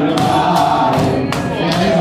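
Crowd of young men singing a Hasidic tune together in one loud chorus, led by a male voice on a microphone, with sharp clapping keeping a beat about twice a second.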